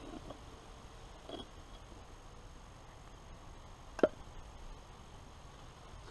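Mostly quiet, with a faint small tap a little over a second in and one sharp knock about four seconds in, from a knife and a piece of dried pemmican being handled on a wooden log table.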